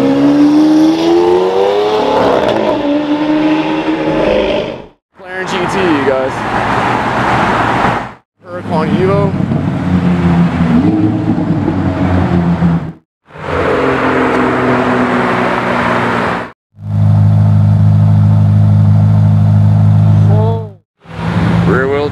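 Supercar engines in a string of short clips separated by abrupt cuts. First a Lamborghini Aventador's V12 accelerates past, its pitch rising over about two seconds. Then other exotic cars drive by and rev, and the last clip is a loud, steady, low engine drone lasting about four seconds.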